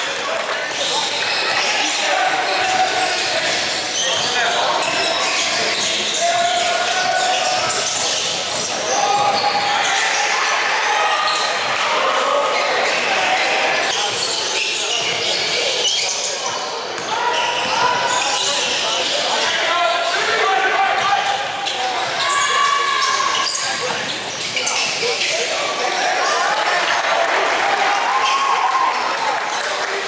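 Live basketball game sound in a large gym: a basketball bouncing on the hardwood floor, with indistinct voices of players and people on the sidelines calling out throughout.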